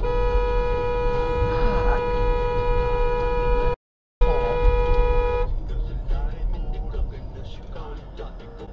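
A car horn held in one long steady blast for nearly four seconds, broken by a brief gap, then sounding again for about a second more, over the low rumble of a moving car.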